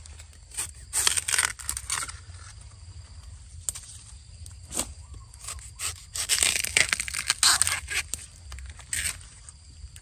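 Young bamboo shoot being worked loose and broken off by hand: scraping and crackling of its dry husk sheaths and the bamboo litter around it in two bouts, about a second in and again from about six to eight seconds, with a few sharp clicks between.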